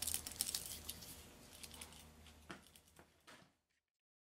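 Light clicks and taps of small tools being handled on a towel-covered workbench, thinning out into a few separate taps and ending about three and a half seconds in.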